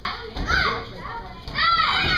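Young children's high voices calling out and chattering.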